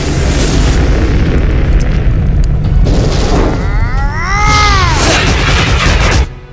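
Cartoon explosion sound effects over music: a heavy, continuous rumbling boom, with a pitched sound that rises and falls about four seconds in.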